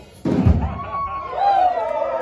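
A single sudden loud thump about a quarter second in, as the band's music cuts off. It is followed by a person's long drawn-out shout that holds a pitch and then falls.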